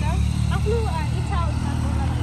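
A person talking in short phrases over a steady low hum that runs underneath.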